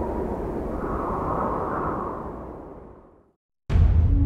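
Deep rumbling whoosh sound effect for a logo intro, swelling and then fading out about three seconds in. After a brief silence, loud orchestral music with bowed strings starts abruptly near the end.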